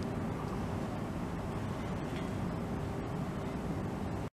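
Steady outdoor background rumble, heaviest in the low range, with a faint steady hum running through it.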